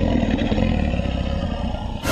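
Dinosaur (T. rex) roar sound effect played from Google's animal sounds feature: a deep, rough, rumbling growl that slowly fades.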